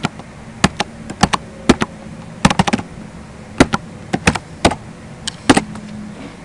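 Typing on a computer keyboard: irregular keystroke clicks, some in quick runs of several, as a string of numbers is entered.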